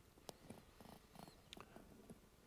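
Near silence: faint room tone with a few soft, faint clicks.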